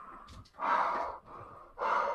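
A man breathing hard from the effort of pull-ups: two loud, heavy breaths about a second apart, with softer breaths between.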